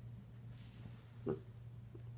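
Micropig giving one short grunt a little past halfway while being tickled.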